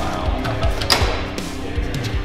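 Background music with a steady beat, and a single sharp click about a second in.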